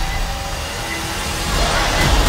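Film trailer soundtrack: dramatic score layered with a dense, deep rumbling sound effect.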